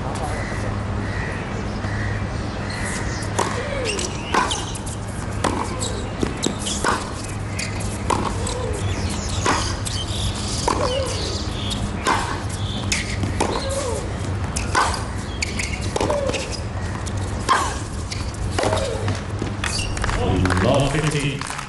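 Tennis rally on a hard court: the ball is struck back and forth, one crisp racket hit about every 1.3 seconds for roughly a dozen shots, with a short vocal grunt on many of the hits. Before the rally, the server bounces the ball ahead of the serve.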